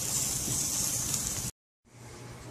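Burgers and fries sizzling on a grill: a steady hiss that cuts off suddenly about one and a half seconds in, followed by a faint low hum.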